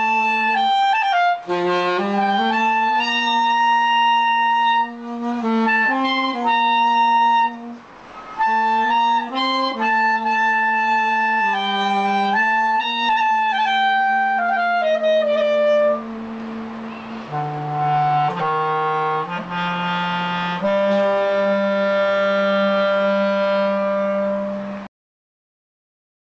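Clarinet and saxophone playing a slow melody together in duet, two lines of mostly long, held notes. In the last few seconds they settle on one long sustained closing note.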